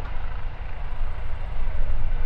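Airbus Helicopters EC135 P2 twin-turbine helicopter hovering just above the ground, a steady low-pitched rotor rumble.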